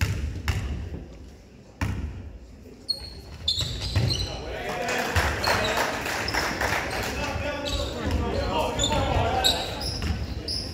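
A basketball bounced a few times on a hardwood gym floor, then a sharp knock as the free throw is shot. After that come short high sneaker squeaks on the court and a crowd's voices, growing louder.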